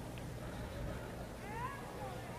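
Quiet hall murmur, with a short high-pitched voice call that rises in pitch near the end.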